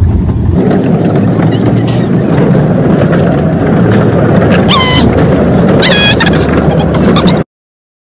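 Two short, high gull calls about five and six seconds in, over a loud, steady rumbling noise. The sound cuts off abruptly shortly before the end.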